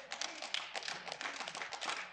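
Light, scattered applause: several people in a congregation clapping unevenly, the claps close together and irregular.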